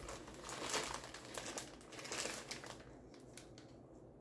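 Faint crinkling and rustling of small plastic bags being handled, dying away near the end.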